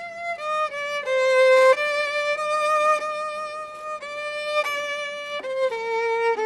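Solo violin playing a slow melody in long held notes with vibrato, stepping from note to note and moving down to lower notes near the end.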